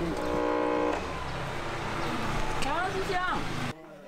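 Street traffic with a steady low engine rumble; a vehicle horn sounds once, held for just under a second, near the start. Short high sliding calls follow near the end, before the sound drops away.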